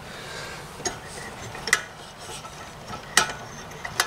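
Steady hiss of rain falling outside a window, with a few sharp ticks and taps over it, the loudest about a second and a half in and again past three seconds.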